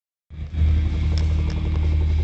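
A loud, deep, steady rumble that starts abruptly about a third of a second in.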